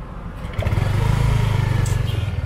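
Motorcycle engine running close by, a low pulsing drone that grows louder about half a second in and then holds steady.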